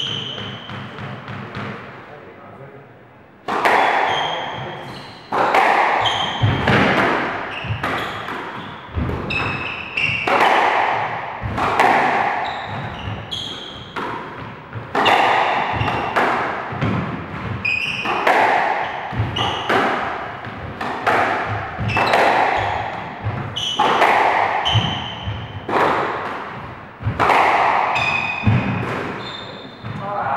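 Squash rally: the ball is struck by the rackets and hits the court walls in a steady back-and-forth of sharp, echoing hits, about one a second, starting about three and a half seconds in. Short high squeaks from the players' shoes on the wooden court floor come between the hits.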